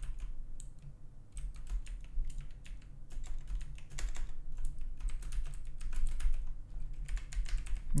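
Typing on a computer keyboard: irregular runs of quick keystrokes with short pauses between them, over a steady low hum.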